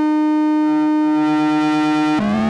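EML 101 analog synthesizer holding one steady note rich in overtones. About half a second in, a lower tone joins it, pulsing quickly, about eight times a second, while a panel knob is turned.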